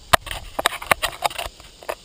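A quick, irregular run of sharp clicks and knocks, densest in the first second and a half, then thinning out.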